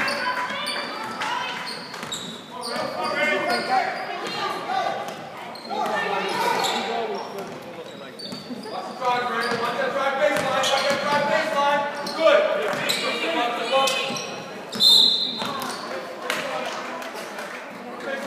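Spectators' voices in an echoing school gymnasium during a basketball game, with a basketball being dribbled on the hardwood court. A brief high squeak sounds about fifteen seconds in.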